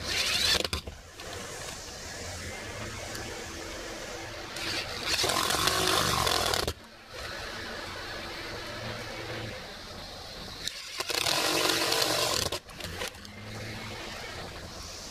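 Power drill run in three bursts of about one to two seconds each, over a steady low hum.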